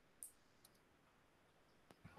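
Near silence with one faint, sharp click about a quarter of a second in and two fainter ticks later: a computer mouse clicking.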